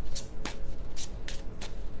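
A tarot deck being shuffled by hand: a quick, irregular run of card flicks.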